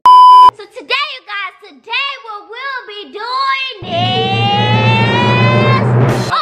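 A loud electronic beep lasting about half a second, then short voice calls and, from a little before the end, one long held vocal note rising slowly in pitch over a low buzz.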